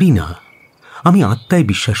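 Bengali speech with a steady chirping of crickets faintly behind it, heard on its own in a short pause in the talk about half a second in.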